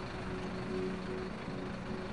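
Steady low hum of an idling vehicle with outdoor street noise, unchanging throughout.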